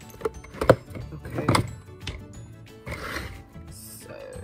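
A few sharp knocks and thumps in the first second and a half, then a brief rustle near three seconds, from a flat iron being handled and set down, over quiet background music.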